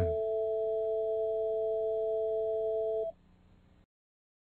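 Two steady electronic pure tones, an A and the E above it, sounding together as an equal-tempered fifth, slightly out of tune compared with a pure fifth. They cut off together about three seconds in.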